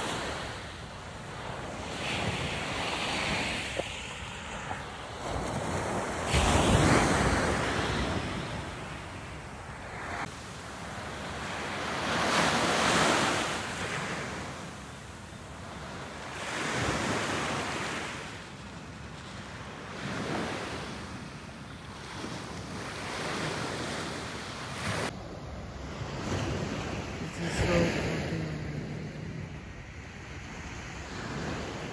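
Sea waves breaking on a shore, the rush swelling and falling every few seconds, with wind on the microphone.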